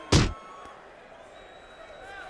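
A single sharp, loud punch impact, a boxing glove landing, just after the start. It is followed by faint, steady arena crowd noise.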